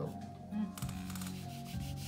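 Fingertips rubbing across a drawing on paper to blend the shading into a soft sfumato: a dry, hissy rub, loudest around the middle, over background music with sustained tones.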